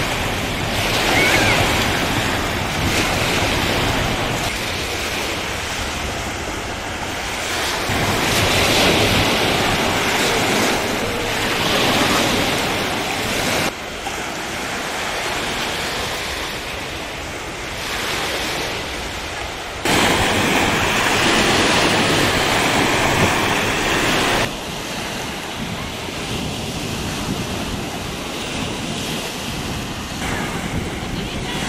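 Small sea waves breaking and washing up on a sandy beach, a steady rush that swells and eases, with wind buffeting the microphone. The sound jumps abruptly in level a few times where separate shots are joined.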